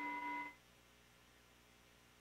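A single short chime, held for about half a second and cut off abruptly, sounded at the elevation of the consecrated host to mark the consecration.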